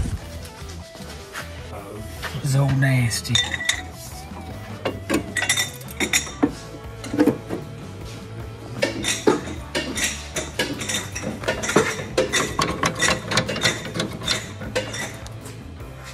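Irregular metallic clinks and clanks of tools and parts being handled, over music playing throughout, with a brief voice about three seconds in.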